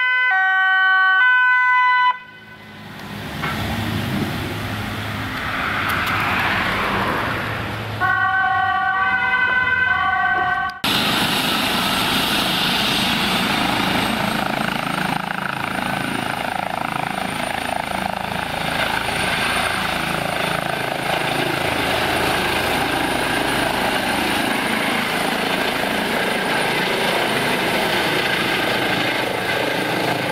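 An ambulance's two-tone siren for the first two seconds and again briefly at about 8 to 11 seconds, with a stretch of vehicle noise between. From about 11 seconds on, a Eurocopter EC135 air ambulance helicopter runs steadily on the ground and lifts off, its turbine and rotor noise carrying a high whine.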